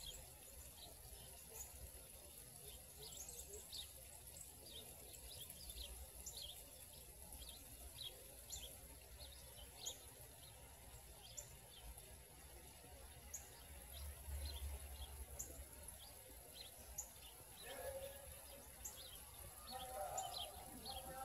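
Faint, scattered chirps of small birds, many short calls at irregular moments, over a low steady outdoor rumble.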